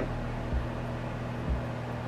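Steady low electrical hum of room tone, with two faint low thuds about half a second and a second and a half in.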